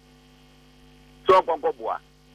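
Steady electrical hum made of several fixed tones, carried on a telephone-line voice feed. A man's speech resumes just over a second in.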